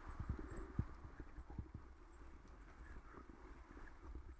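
Bicycle and its mounted camera rattling and knocking over a rough path, irregular knocks bunched in the first second, over steady tyre and wind noise.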